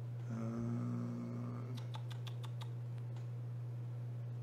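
Light mechanical clicks of keyboard keys being pressed, a quick run of them about two seconds in, over a steady low electrical hum. A faint held note sounds for about a second just before the clicks.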